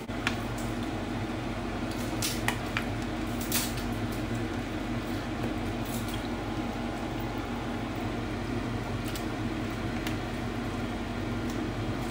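Raw chicken pieces being laid by hand into a stainless steel pot, with a few sharp clicks and knocks against the metal, over a steady kitchen hum and hiss.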